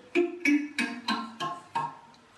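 Homemade thumb piano with wooden coffee-stirrer tines, set on an aluminium waste paper bin as a sound chamber, plucked about six times at a steady pace, each a short ringing note at a different pitch. The tines are not tuned to a scale.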